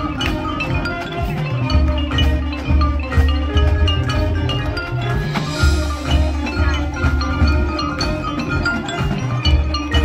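College marching band playing a rock-style dance tune: brass and sousaphones carry repeating low bass notes over a steady drum beat, with marimba and other mallet percussion from the front ensemble.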